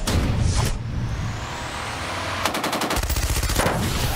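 Automatic rifle fire: a rapid burst of shots begins about two and a half seconds in and runs on to near the end, over a low rumble.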